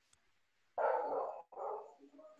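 A dog barking twice in quick succession, starting about a second in, picked up through a participant's microphone on a video call.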